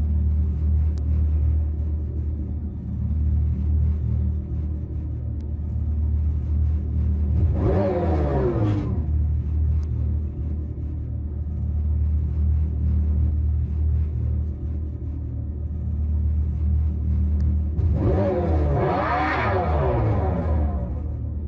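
Dodge Charger Daytona SRT electric concept's Fratzonic Chambered Exhaust, a speaker-made muscle-car exhaust note, rumbling steadily at a deep pitch. It is revved twice, rising and falling, about eight seconds in and again near the end.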